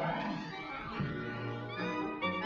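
A cartoon cat's wavering meow near the start, over orchestral music with strings.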